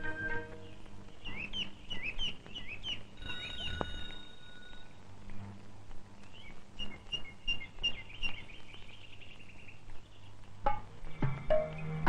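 Birds chirping in short, quick repeated calls, with a brief bell-like ringing tone about three seconds in. Background music with a steady low bass comes in near the end.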